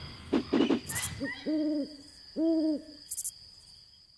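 An owl hooting: two deep hoots about a second apart, over a steady high chirring of night insects. A rushing swell with a few clicks comes just before the hoots.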